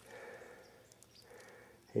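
Quiet background with faint noise and a few small clicks, then a man's voice begins right at the end.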